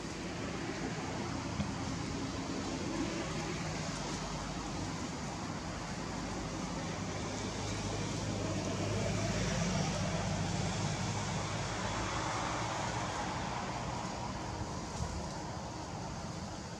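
Steady outdoor background noise of distant traffic, with a motor vehicle rumble that swells to a peak about halfway through and then fades.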